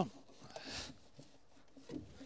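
Faint rubbing and rustling of a flexible ribbed ducting hose being worked into place by hand, with a few light clicks.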